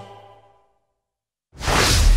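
Music trailing off in the first half second, then silence, then a whoosh transition sound effect with a deep rumble swelling in about a second and a half in.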